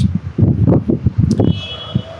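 Wind buffeting a phone's microphone on an open rooftop, in irregular low gusts that ease off near the end.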